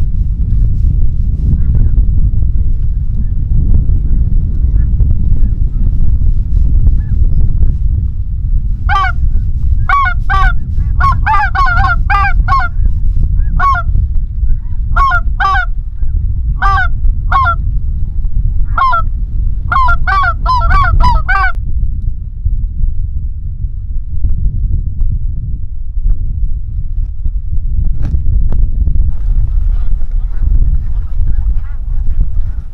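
Wind buffeting the microphone as a steady low rumble. From about nine seconds in, snow goose calls: short high honks, some close together, stopping about twenty-one seconds in.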